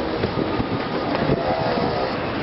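Steady street noise beside a stopped articulated city bus: an even rumble and hiss with faint clatter.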